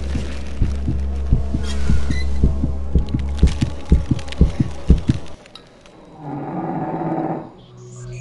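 Horror-style intro soundtrack: a low drone under regular heavy heartbeat-like thumps, about two to three a second, that stop about five seconds in, followed by a short swell of hissing noise near the end.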